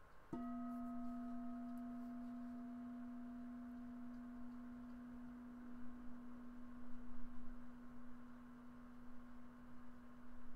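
A meditation bell (singing bowl) struck once, ringing with a steady low tone and a few fainter higher overtones that fades only slowly.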